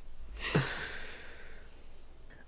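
A person sighing: one long breathy exhale with a short bit of voice near its start, fading away over about a second.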